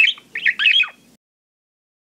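Bird chirping: a quick run of short, high chirps that stops abruptly about a second in.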